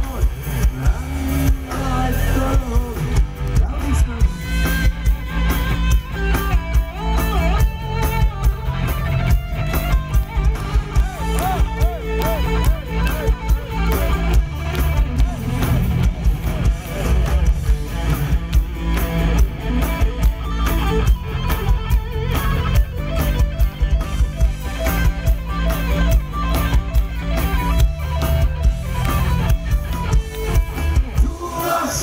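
Heavy metal band playing live: electric guitars, bass and drum kit, with a steady beat and a lead melody that bends and wavers in pitch through the middle.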